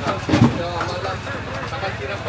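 Voices of people talking over a steady low engine hum, with a brief low thump about half a second in.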